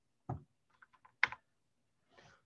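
A few short taps on a computer keyboard. The loudest is a sharp key press about a second and a quarter in.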